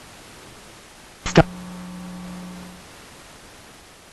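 Steady background hiss. A little over a second in comes a short word, followed by a flat, low steady hum with overtones that lasts about a second and a half and then stops.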